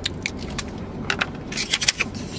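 A run of light clicks and crinkles from a plastic spoon and a plastic lid handled against a takeout dessert cup, the clicks coming thickest near the end.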